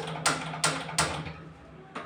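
Stainless steel cooking pot and lid being handled on the counter, metal knocking and clinking: about four sharp clicks in the first second, then quieter, over a steady low hum.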